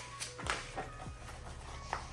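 Paper instruction booklets and packaging being handled, with soft rustles and a few light taps.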